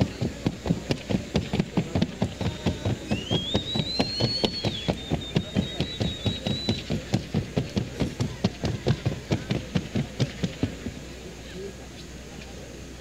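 Hooves of a Colombian paso fino mare striking the hard show track in the breed's fast, even four-beat gait, a crisp drumming of about four strikes a second that stops about a second before the end. A thin whistle rises and holds briefly in the middle.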